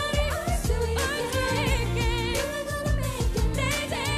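A female pop vocalist sings with a wide vibrato over a live band, with a steady drum beat and a heavy bass line.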